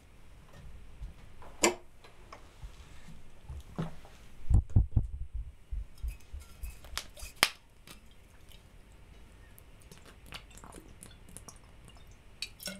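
Handling noises from a plastic water bottle being picked up, opened and lifted to drink: scattered sharp clicks and crinkles, with a cluster of low thumps about halfway through.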